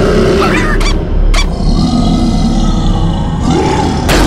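Cartoon sound effects: a loud low rumble throughout, with grunting and roaring vocalizations layered over it and two sharp clicks about one and one and a half seconds in.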